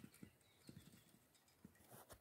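Near silence, broken by a few faint, irregularly spaced low knocks.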